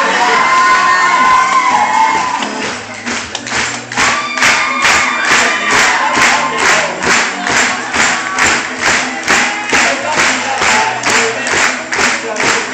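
Group singing a pop song to music before a cheering crowd; about four seconds in a steady beat sets in, about two strokes a second.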